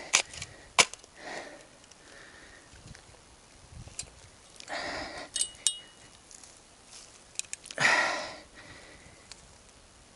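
Steel shovel digging into hard, dry soil: a few scraping strokes of the blade, the loudest near the end, with sharp clicks and a brief metallic clink in the middle as the blade strikes stones.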